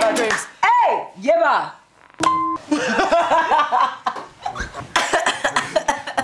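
A ukulele song's last chord ends at the start, then women's voices whoop in two rising-and-falling calls and laugh, with a short steady tone about two seconds in.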